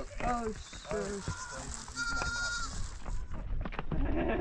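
A goat bleats in the middle: a drawn-out, wavering call. Brief voices come just before it, and a few sharp knocks follow near the end.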